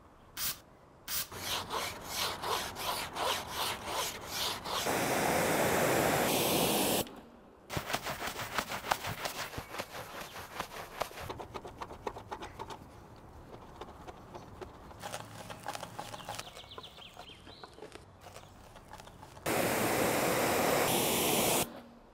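Alloy car wheel being scrubbed with a wheel brush: quick, rhythmic rubbing strokes over the wet, foamy rim. A couple of short spray bursts come near the start, and two steady spells of spraying, each about two seconds long, break up the scrubbing.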